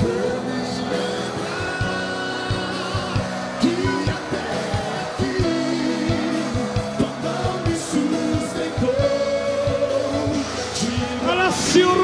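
Live worship music: a sung vocal line over held keyboard chords and drums, louder with more singing near the end.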